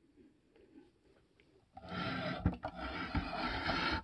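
Near silence for about the first two seconds, then a steady rubbing and scraping as a 1:50 scale diecast model trailer is slid and turned around on a tabletop by hand, with a couple of soft knocks partway through.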